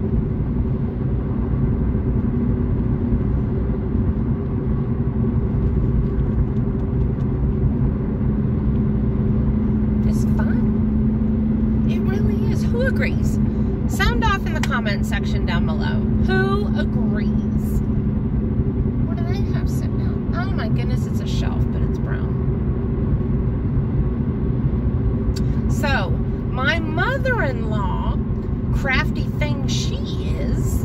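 Steady road and engine noise inside a moving car's cabin: a low drone, with a hum that grows stronger for several seconds in the middle.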